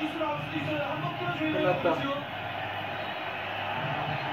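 Quiet background voices in a bar, with speech in the first couple of seconds, then a steadier low murmur of room noise.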